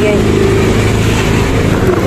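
Steady low rumble of outdoor background noise with no distinct events, and faint voices in the background.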